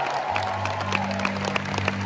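A low sustained keyboard note comes in about a quarter second in and holds steady, with scattered clapping from a concert crowd over it.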